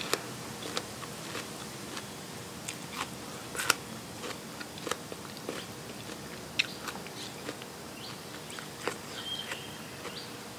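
Close-up chewing and biting of food, with irregular crisp crunches and wet clicks from the mouth.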